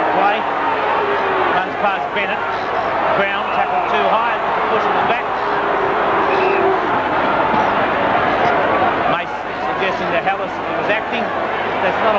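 A football crowd in the stands, many voices shouting and calling out over one another in a steady din.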